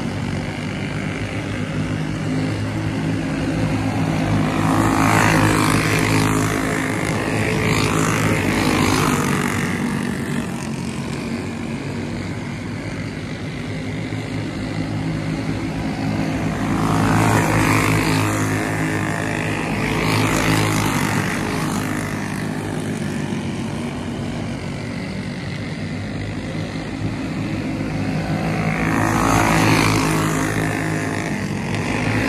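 Several racing go-karts' small engines running at speed on a dirt oval. The sound swells louder three times as karts pass close by, then falls back.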